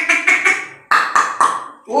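A man's voice making two rapid, pulsing bursts of about a second each, not ordinary words, with a short break between them.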